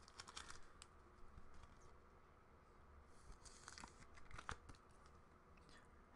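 Faint rustling and clicking of trading cards and a clear plastic card holder being handled, in short scattered bursts over near-silent room tone.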